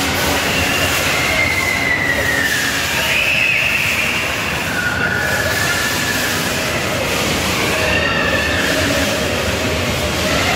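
Steady loud din of an indoor amusement area, with high squealing tones that rise and fall, each lasting about a second, recurring throughout.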